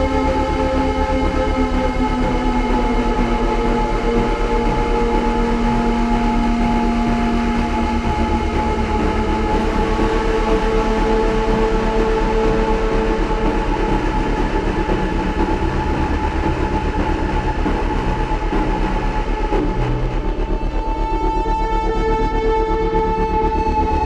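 Experimental electronic drone music played live: several long held tones layered over a dense, rapidly fluttering low rumble, with no beat or melody.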